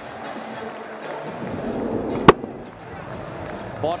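A cricket bat striking the ball once, a single sharp crack about two seconds in, the ball taken off the bottom of the bat, over steady stadium crowd noise.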